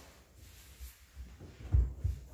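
A few soft bumps, then one dull low thump near the end: a body settling onto a rubber gym floor mat.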